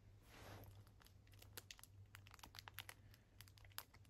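Faint crinkling of a plastic snack wrapper around a wafer bar as fingers handle and peel it, a scatter of small irregular crackles.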